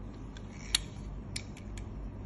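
A handful of light metallic clicks and taps as a bare aluminium 1/12-scale RC car chassis is handled on a glass table, the sharpest a little under a second in, then several smaller ones.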